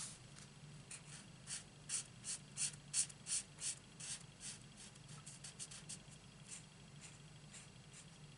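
Felt tip of a Stampin' Blends alcohol marker rubbing across cardstock in short colouring strokes, about three a second, strongest in the first half and lighter and sparser toward the end.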